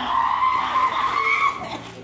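A woman's long, high-pitched shriek, held on one note and cut off about one and a half seconds in.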